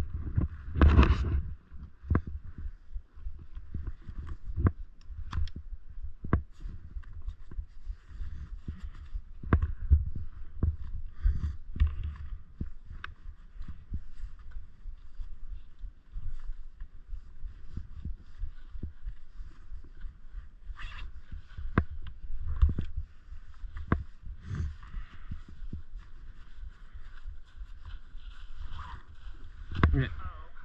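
Skis sliding and scraping over uneven snow, with wind buffeting the action camera's microphone as a steady low rumble. Sharp knocks come at irregular moments, loudest about a second in and again about ten seconds in.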